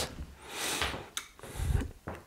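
Faint room noises in a small room: a soft hiss, a light click about a second in, and a dull low thump near the end.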